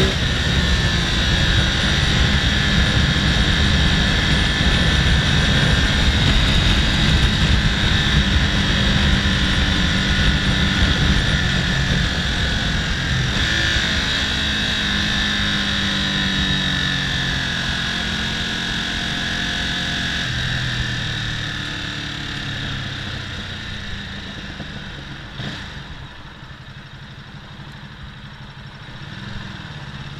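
Ducati motorcycle under way at speed: heavy wind rush on the microphone over the engine, with the engine pitch shifting up and down. About two-thirds of the way through the bike slows, and the wind and engine die down toward the end.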